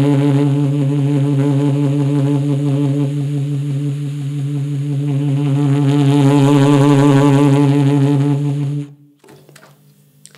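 Saxophone playing a fast, even trill between low B-flat and low B, the B-flat key worked by the right-hand first finger while the thumb holds its place, which makes the trill quick and easy. The trill holds for about nine seconds, easing slightly in the middle, then stops abruptly.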